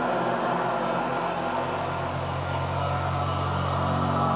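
Downtempo psybient electronic music: sustained synth pads over a low droning bass that swells in about a second and a half in, with no clear beat.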